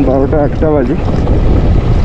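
Motorcycle riding on a rough gravel road with heavy wind rushing over the microphone, a steady low rumble throughout. A man's voice, drawn out like humming or singing, runs through the first second.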